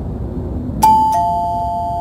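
Two-tone ding-dong doorbell chime: a higher note about a second in, then a lower note just after, both ringing on over a steady low background noise.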